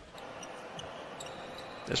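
Faint basketball-court ambience in the broadcast feed: a low steady hiss with a few faint light taps.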